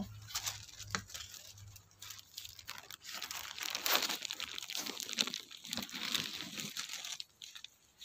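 Irregular crackling rustle of water spinach (kangkung) leaves and stems being handled and brushing close to the microphone, busiest in the middle and dying away near the end.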